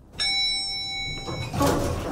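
Elevator arrival chime, a single bright ding that rings for about a second, followed by a louder swish of the stainless-steel elevator doors sliding.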